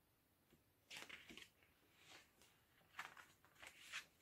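Faint rustling of a picture book's paper pages being turned and handled, in short bursts about a second in and again near the end.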